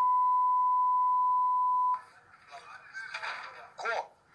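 A single steady beep tone of the kind used to censor speech on broadcast TV, cutting off sharply about two seconds in. Quieter talk follows.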